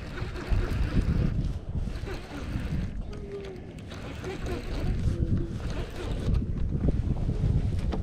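Wind buffeting the microphone in an uneven low rumble that swells and dips.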